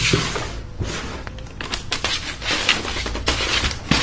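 Cardboard box being opened and its white packing insert handled by hand: irregular rustling and scraping with several short, sharp clicks and knocks.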